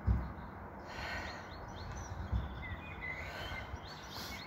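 Faint outdoor background of small birds chirping, over a steady low rumble. Two soft low thumps, one at the start and one a little past two seconds in, fit feet landing on a wooden deck during lunges.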